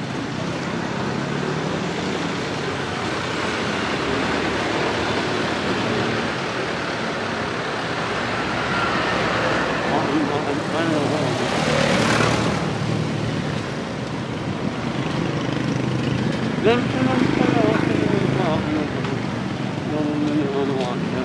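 Street traffic noise, steady, with a large truck passing close by about halfway through, its noise swelling and fading over a couple of seconds.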